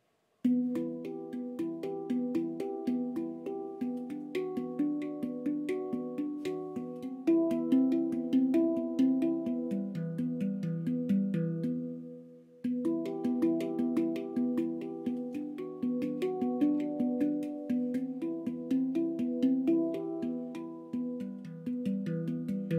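Symphonic Steel handpan played with the fingertips: a fast, rippling stream of ringing steel notes that starts about half a second in, breaks off briefly near the middle, then picks up again.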